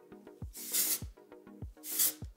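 Aerosol dry texturizing spray hissing in two short bursts, just before the first second and again near the end. Background music with a steady beat plays throughout.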